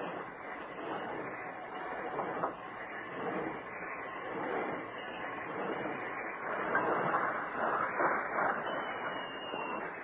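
Radio-drama sound effect of a steam locomotive standing with its engine running: a steady hiss, with stronger irregular pulses from about six seconds in.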